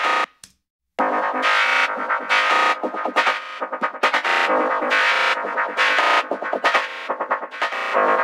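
A looped sample of a psytrance track playing back: a bright, rhythmically chopped synth line with no low bass. A short blip sounds at the very start, then after a second of silence the loop runs continuously.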